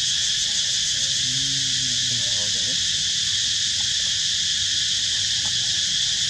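A steady, high-pitched insect chorus, running without a break.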